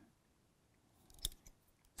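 Mostly quiet, then a short cluster of small sharp metallic clicks about a second in, from the jaws of a digital caliper and a bullet comparator insert being handled while a loaded round is measured.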